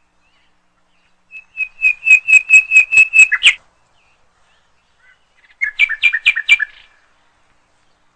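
A songbird sings two phrases of rapidly repeated clear notes, about four a second. The first phrase lasts about two seconds; the second, slightly lower and shorter, comes about two seconds after it.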